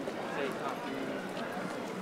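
Busy pedestrian sidewalk ambience: many people's footsteps on paving, with overlapping voices of passers-by.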